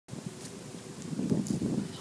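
Wind buffeting the microphone with camera-handling noise: a low, uneven rumble that grows louder toward the end, with a few faint ticks.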